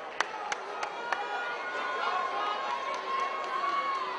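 Arena crowd murmuring and chattering, with about five quick, sharp claps in the first second and one long held note rising out of the crowd in the second half.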